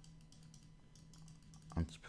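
Faint, irregular clicking at a computer as a brush is dabbed on an image, over a low steady hum.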